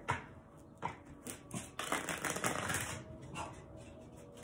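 A deck of tarot cards being riffle-shuffled: a few light taps and slides, then the fluttering cascade of the cards riffling together out of a bridge, about a second long, starting about two seconds in.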